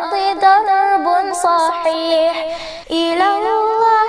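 A young girl singing an Arabic nasheed, holding drawn-out, ornamented sung lines. There is a short pause for breath about three seconds in, before a new phrase begins.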